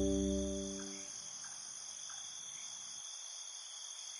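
Ambient sleep music: a sustained chord fades out over about the first second. After that only a faint, steady, high-pitched chirring remains.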